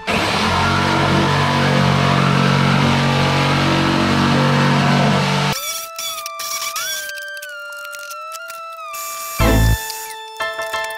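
Electric jigsaw cutting through the plastic lid of a storage box for about five and a half seconds, then stopping suddenly. Background music with a melody stepping up and down carries on alone after it.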